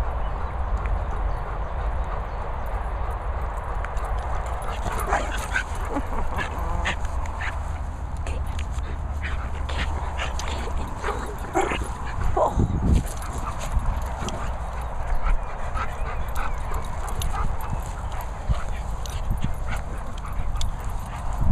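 Dogs playing outdoors, giving short yips and whines, with a cluster around five seconds in and another around twelve seconds in. A steady low rumble of wind and handling on the microphone runs underneath.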